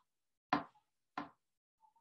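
Two sharp knocks on a hard surface, about two-thirds of a second apart, the first one the louder.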